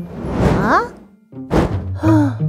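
Cartoon sound effects: a rushing whoosh of a gust lasting about a second, then a brief pause and a single sudden thunk about one and a half seconds in.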